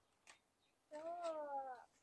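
A cat meowing once, one call about a second long that rises slightly and then falls away.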